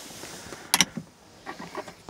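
A single sharp click, a quick double snap, about three-quarters of a second in, over a faint steady hiss.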